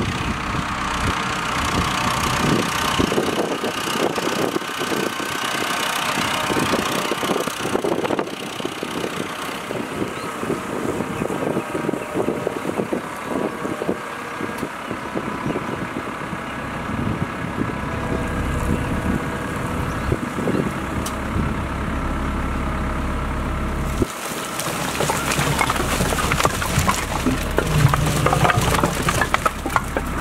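Farm tractor engine running steadily while it carries a loaded front-end bucket. Near the end the bucket tips and branches and firewood tumble out, cracking and clattering.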